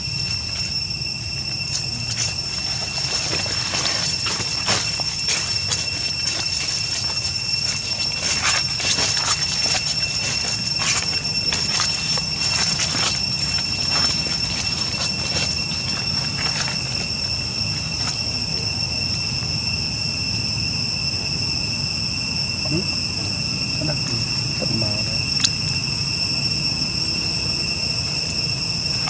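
A steady, high-pitched insect drone holding one shrill tone with a higher one above it. Through the first half it is joined by irregular crackling of dry leaves underfoot.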